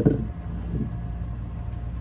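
Truck engine idling: a steady, unchanging low hum.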